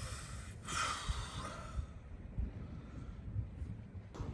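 A man's long, breathy sigh about a second in, a sigh of disappointment at a lost fish, over a faint low rumble.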